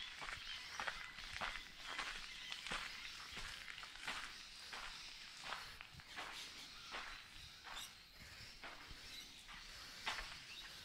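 Footsteps at a steady walking pace on a concrete floor.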